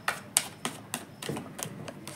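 Tarot deck being shuffled by hand, cards slapping and flicking against each other in a quick, irregular run of crisp clicks, about four a second. The loudest snap comes about a third of a second in.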